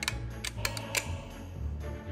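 Several sharp, irregular clicks from the trigger mechanism of a 1962 Tru-Vue Big Game Safari Picture Gun, the toy's trigger advancing its picture reel, the strongest about a second in. Background music with a steady bass plays underneath.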